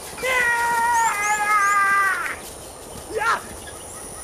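A long drawn-out call with a clear pitch, lasting about two seconds and stepping down slightly in pitch about a second in. A short falling call follows about three seconds in, with faint high bird chirps behind.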